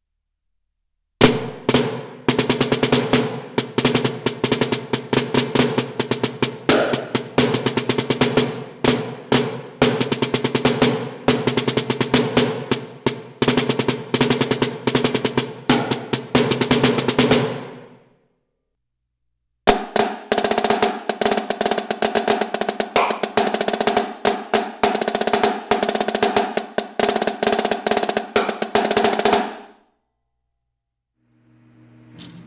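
Marching snare drum played with wooden sticks: a fast rudimental solo of accented single strokes, flams and buzz strokes. It starts about a second in and comes in two long passages with a pause of nearly two seconds between them.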